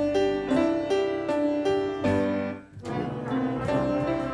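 Instrumental music led by piano, played as a series of sustained notes, with a brief break about two and a half seconds in before it picks up again.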